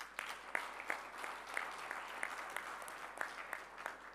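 An audience clapping. It starts suddenly and dies away near the end.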